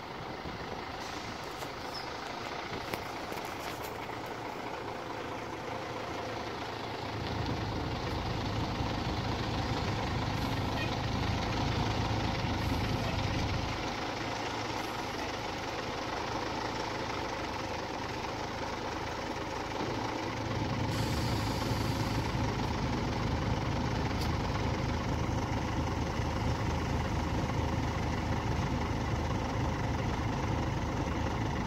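Diesel-type engine of a Volvo B10BLE three-axle city bus running while the bus manoeuvres to park, swelling louder twice as it is driven, about a quarter of the way in and again about two-thirds through. A brief hiss of air comes as the second swell begins.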